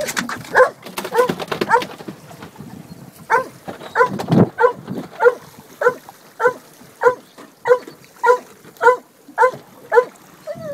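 A dog barking over and over in short, high barks: a few irregular barks at the start, then a steady run of one bark about every 0.6 seconds from about three seconds in.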